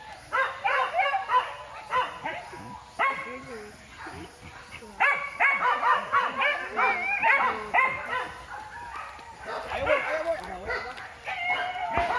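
A pack of hunting dogs yelping and baying on the chase of a wild boar, many short high cries overlapping, with a brief lull in the middle.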